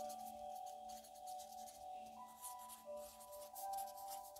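A pen scratching across paper in quick strokes of handwriting, over soft ambient music with long held notes.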